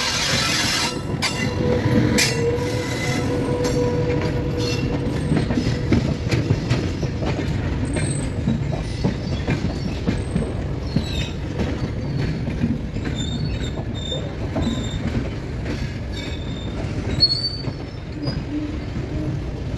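Train wheels running on the rails, heard from the open door of a moving coach: a steady rumble with irregular clattering knocks over rail joints and points. A loud rush near the start as an electric locomotive passes close alongside, a held whine in the first few seconds, and short high wheel squeals in the second half.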